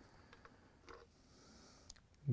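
Near silence, with a few faint light clicks as a loosened cast-iron main bearing cap on a Ford 302 block is worked off by hand.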